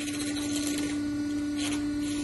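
Electric motor of a Ravaglioli tractor tyre changer running with a steady, even hum.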